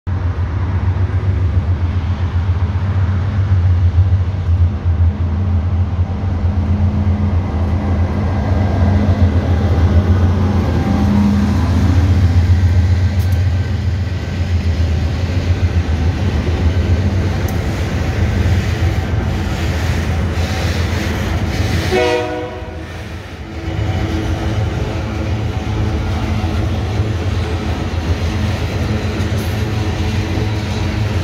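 Two GE diesel-electric freight locomotives, an AC44i leading a C36-7, passing close by with a deep steady engine rumble, followed by a train of flatcars loaded with steel coils rolling past with steady wheel-on-rail noise. About two-thirds of the way through the sound dips briefly.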